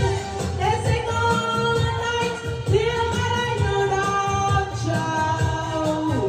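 A woman singing live into a microphone over an amplified backing track, holding long notes that glide between pitches above a steady low beat.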